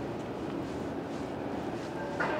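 Steady outdoor city background noise with a faint, steady low engine hum.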